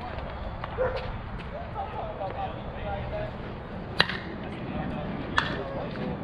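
Sharp crack of a bat striking a softball about four seconds in, then a second, weaker sharp knock about a second and a half later, over distant players' voices.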